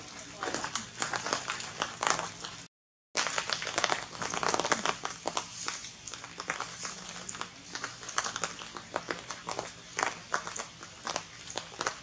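Dense, irregular crackling and rustling clicks that break off completely for about half a second roughly three seconds in.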